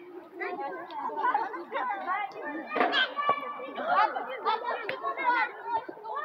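Overlapping children's voices chattering and calling out as they play, several at once with no pause.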